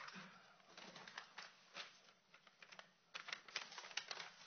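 Faint, irregular small clicks and rustles of a quiet courtroom over a low steady hum, getting busier about three seconds in.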